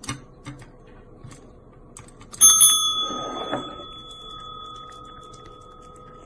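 Chrome desk service bell pressed by a cat's paw about two and a half seconds in. It rings a bright, clear tone that fades slowly over several seconds, after a couple of light taps at the start.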